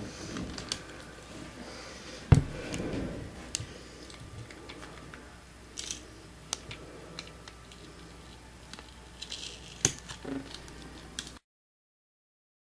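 Clear packing tape being handled and worked over a paper label on a tabletop: scattered crackles and small clicks, with one sharp knock on the table about two seconds in. The sound cuts off just before the end.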